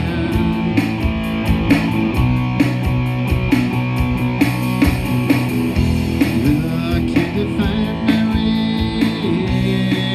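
Live rock band playing: electric guitar and electric bass over a drum kit, with regular drum hits.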